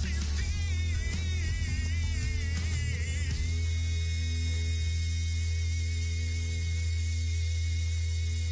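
Music with guitar over a heavy, steady bass. A wavering high melody line runs for about the first three seconds, then gives way to long held notes.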